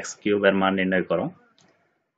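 A man's voice speaking Bengali for about a second, then a pause of near silence.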